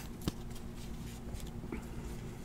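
Faint rustle of Panini Prizm trading cards being handled and slid against one another in the hands, with one light click about a quarter second in.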